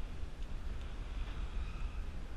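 Wind buffeting the microphone: a steady low rumble with a faint hiss above it.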